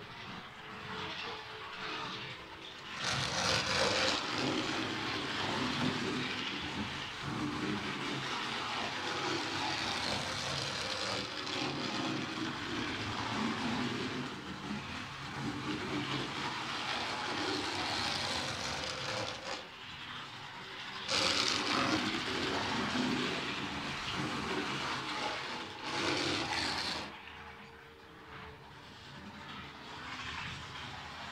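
Model railway locomotive running on the layout's track, a steady rushing motor-and-wheel noise that starts about three seconds in, cuts out briefly around twenty seconds, then runs again until it stops near the end.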